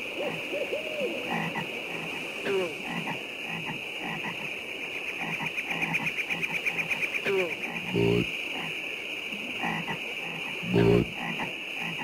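Night-time swamp sound from an advertisement: a steady, high chorus of chirping insects with small frog calls scattered through it. Then come two deep, loud bullfrog croaks about three seconds apart, the frogs croaking "Bud" and then "Weis".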